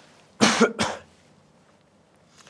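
A man coughing twice in quick succession, about half a second and a second in.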